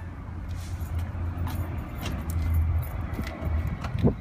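Keys jingling and light clicks over a steady low rumble, ending with the click of an SUV's driver door being unlatched and opened.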